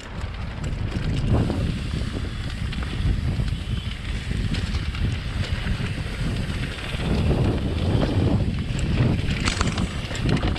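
Wind buffeting an action camera's microphone as a mountain bike rolls down a dirt singletrack, with tyre and trail noise under it and a few short clicks and rattles from the bike near the end.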